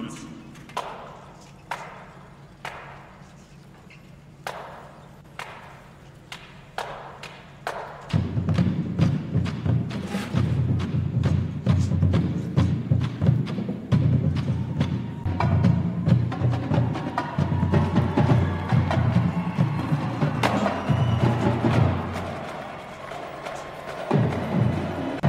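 Marching band drumline playing a cadence: at first a single sharp click keeps time about once a second, then about eight seconds in the bass drums and snares come in with a loud, driving beat.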